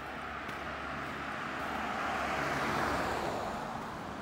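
A car driving past on the road, its engine and tyre noise swelling to a peak about three seconds in and then fading.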